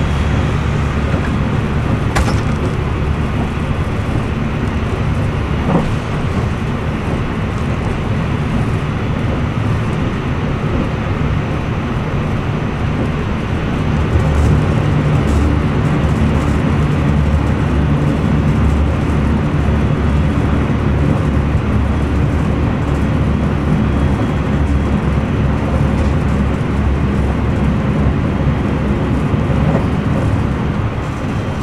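Steady rumble of a moving train heard from inside the passenger car, with a couple of faint clicks early on. It grows louder about fourteen seconds in, as another train runs close alongside.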